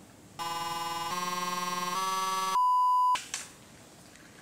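Edited-in electronic sound effect: three synth tones, each a step higher, then a short, louder pure beep.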